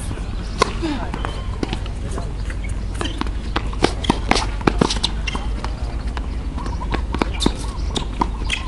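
Tennis rally on an outdoor hard court: sharp pops of the racket strings hitting the ball and the ball bouncing, starting with a serve and quickening in the middle, with sneaker footsteps, over a steady low hum.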